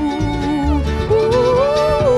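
Acoustic string band playing a slow country song: a woman sings a wavering melody line that pauses briefly, then rises and holds, over acoustic guitar, mandolin and upright bass.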